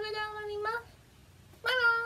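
A woman's high-pitched, cat-like squealing cries, two of them: a held one that sinks slightly in pitch, then a shorter one starting about a second and a half in.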